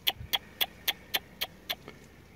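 An animal calling: a run of short, sharp chirps, about four a second, that stops shortly before the end.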